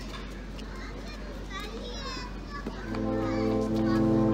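Children's voices and chatter, then about three seconds in a Russian horn orchestra enters with a loud held chord of many steady notes. Each straight horn sounds a single note, and together they build the chord.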